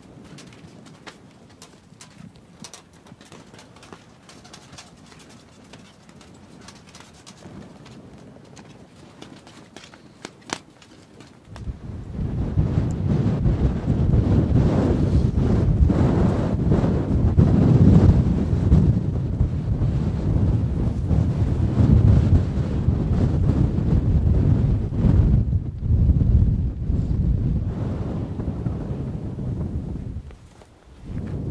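Faint ticks and clicks over a quiet background, then about twelve seconds in a sudden loud, low rumble of wind buffeting the microphone, gusting up and down until the end.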